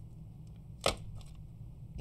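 A single short, sharp click about a second in, over a low steady hum.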